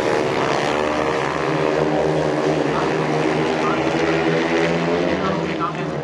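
Engines of four speedway sidecar outfits racing together as a pack on a dirt oval: a loud, steady mix of several overlapping engine notes.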